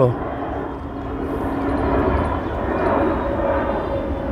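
Jet airliner passing low overhead, its engines a steady rushing noise that grows a little louder through the middle. It seems to be descending to land.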